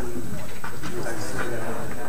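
Indistinct chatter of several people talking at once in a large room, with no single voice standing out.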